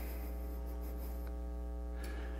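Steady electrical mains hum: a low, unchanging buzz with a ladder of even overtones in the recording's sound system.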